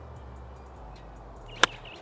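A nine iron striking a golf ball cleanly: one sharp click about one and a half seconds in, over a low, steady music bed.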